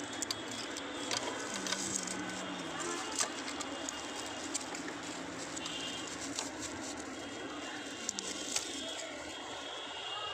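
Small scattered clicks and rustles of hands handling a printer's plastic parts, ribbon cable and tissue paper, over steady background noise.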